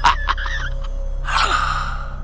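A man's breathy gasp about one and a half seconds in, after a sharp click near the start, over a low steady hum.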